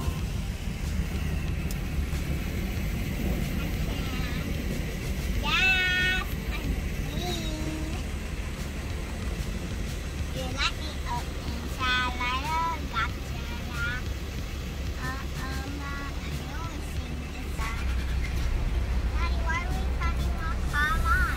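Steady low engine and road rumble of a vehicle, with indistinct voices in short snatches over it.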